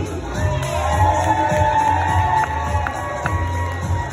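Upbeat entrance music with a steady thudding bass, played over a room of guests cheering and clapping.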